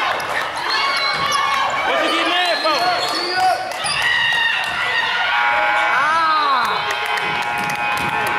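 Basketball shoes squeaking repeatedly on a hardwood gym floor, with a basketball bouncing, as players run the court during a game.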